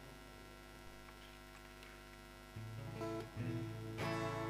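A steady electrical hum, then about two and a half seconds in an acoustic guitar starts playing sustained picked notes.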